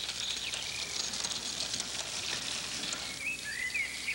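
Woodland ambience: a steady background hiss with a few short bird chirps near the end.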